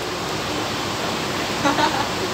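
Steady rushing background noise, with a short laugh in two quick bursts near the end.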